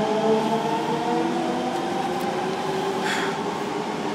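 Train running, heard from inside the carriage: a steady hum of several tones that slowly slide in pitch, with a brief hiss about three seconds in.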